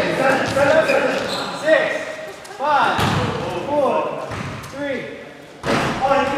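Basketball shoes squeaking in short, rising-and-falling squeals on a hardwood gym floor during play, with ball bounces and a loud thump just before the end, echoing in a large gym.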